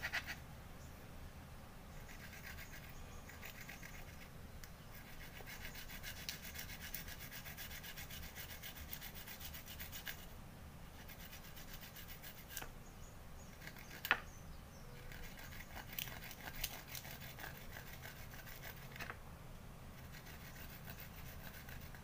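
Fresh turmeric root being grated by hand with quick up-and-down strokes: a faint, fast, rhythmic scraping in several runs with short pauses between them. One sharp tap about two-thirds of the way through.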